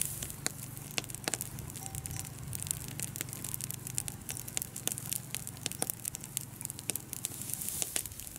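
Dry rice straw burning in an open pile, crackling with many sharp, irregular pops over a low steady hum.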